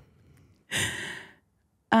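A woman sighs once, a breathy exhale lasting under a second, about midway through.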